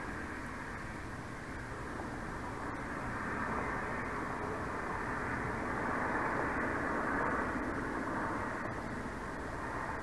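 A steady outdoor rushing noise that swells about midway and then eases off again.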